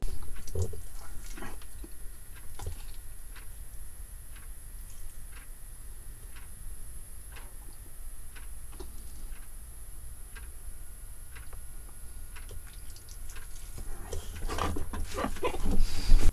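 Eating sounds at a table: scattered small clicks and smacks as food is handled by hand and chewed, roughly a couple each second, over a steady low hum in a small room. The handling gets busier near the end.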